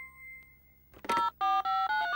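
Push-button telephone being dialled: a quick run of short touch-tone beeps starts about halfway through.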